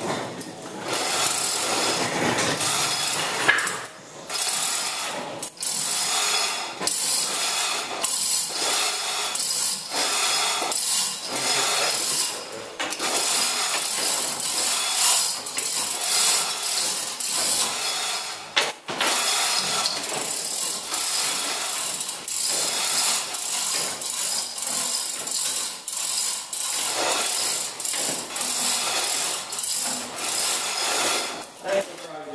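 A manual chain hoist being hauled: the chain rattles through the block and the ratchet pawl clicks on and on, with brief pauses.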